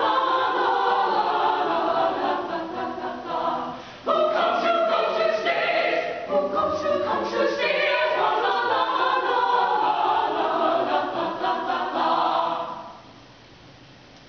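Small mixed-voice madrigal choir singing a cappella in parts. The voices drop briefly about four seconds in and come back in together, then stop near the end.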